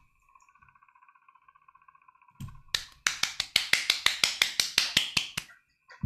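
Hands clapping in a quick, loud run of sharp claps, about seven a second, starting a little over two seconds in and lasting about three seconds. Before it there is a faint, wavering high hum.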